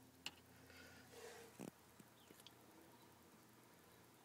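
Near silence, with a few faint clicks and rustles as a multimeter test lead and its alligator clip are handled and clipped onto a ground point.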